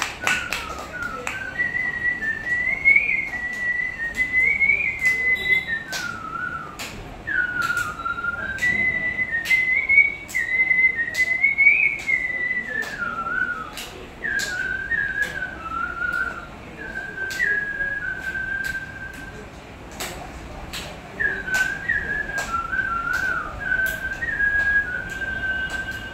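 A man whistling a song melody into a handheld microphone, amplified through a small speaker: one clear tone that glides up and down in phrases, with short breaks between phrases. Irregular sharp clicks come through the amplified sound.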